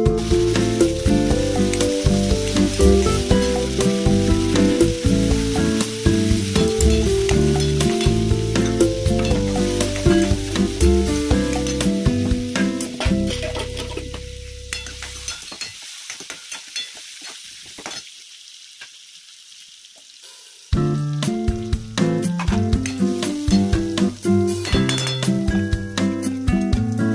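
Cluster beans sizzling in hot oil in a steel kadhai, stirred with a steel ladle, under background music. The music fades out about fourteen seconds in, leaving only the sizzle and small clicks of stirring for a few seconds, then comes back sharply about twenty-one seconds in.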